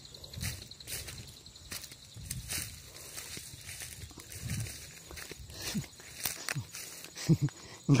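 Footsteps and the rustle of tall grass and brush against a walker pushing along an overgrown trail, in irregular crackles and swishes. A man's voice begins at the very end.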